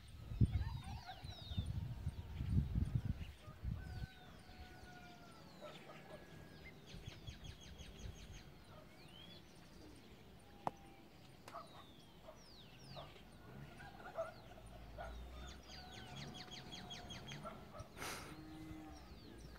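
Small birds chirping and trilling on and off, with distant calls of domestic fowl. Low rumbling thumps on the microphone in the first few seconds.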